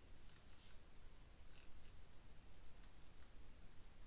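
Faint computer mouse clicks, a dozen or so sharp clicks, some in quick pairs and clusters, over a low steady hum.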